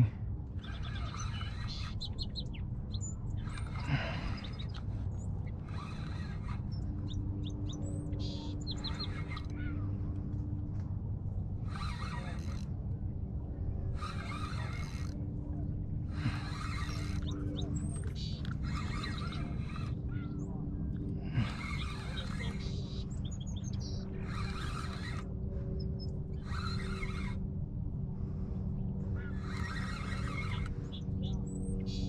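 Small songbirds singing in repeated short, chirpy phrases, one every second or two. A low steady hum runs underneath.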